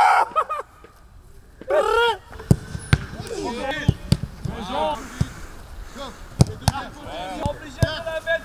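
Footballs being struck on a grass training pitch: short sharp thuds at irregular intervals, about one a second, with players shouting and calling across the pitch, loudest near the start and about two seconds in.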